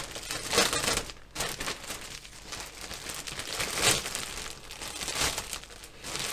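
Thin plastic bag crinkling and rustling in irregular bursts, with a few louder crinkles, as a plastic model kit sprue is worked out of its bag.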